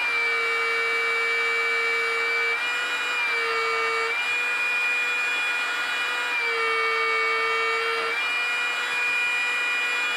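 Parkside belt sander running with a steady high motor whine while a chisel in a honing guide is ground on its belt. The whine dips slightly in pitch twice, each time for about a second and a half, as the chisel loads the belt.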